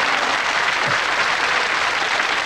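An audience applauding steadily in response to a joke's punchline.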